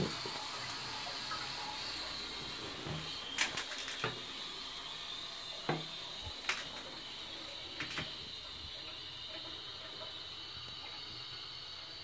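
Shires Denbigh low-level WC cistern refilling through its fill valve: a steady hiss of water with a high whistle to it, the slow refill that follows a flush. A few light clicks and knocks are scattered through it.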